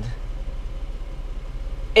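A Jeep's engine idling, a steady low rumble with a fine even pulse, heard from inside the cabin.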